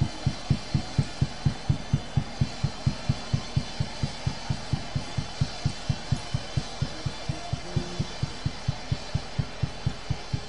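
Worship band music carried by a steady bass drum beat, about four beats a second, with a faint sustained backing underneath.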